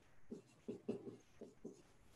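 Dry-erase marker writing on a whiteboard: a faint run of short strokes, several a second, as words are written out.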